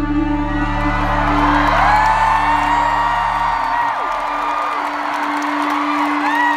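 Live pop music recorded from the arena stands: a held synth chord over deep bass, the bass dropping out about four seconds in while a steady tone carries on. High whoops from the crowd glide over the music.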